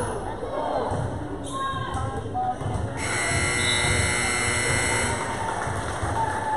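Gym scoreboard buzzer sounding one steady blast of about two seconds, starting about three seconds in. Basketball bounces and crowd chatter continue underneath.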